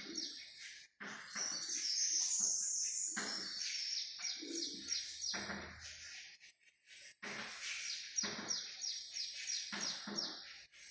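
Small birds chirping in quick, repeated high notes, with chalk scratching and tapping on a chalkboard as words are written.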